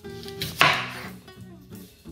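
Chef's knife slicing through a green apple onto a wooden cutting board: one loud cut about half a second in, fading quickly, over soft background music.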